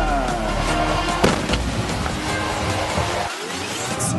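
Background music of a highlight reel; its deep bass drops out shortly before the end.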